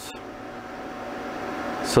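Steady hiss with a faint hum from the running off-grid solar inverter's cooling fan, slowly growing louder, with a short click at the start.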